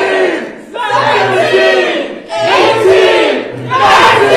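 A group of people shouting and cheering together in three loud, drawn-out bursts, each about a second long with short breaks between. The shouting turns continuous near the end.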